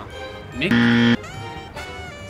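A short, loud, flat buzzer tone, switched on and off abruptly and lasting about half a second, over background music: a game-show style wrong-answer buzzer sound effect marking an incorrect guess.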